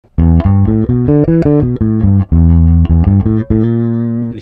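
Electric bass guitar played fingerstyle: a quick riff of short plucked notes from the minor pentatonic scale, one note held a little longer about halfway, ending on a note left ringing.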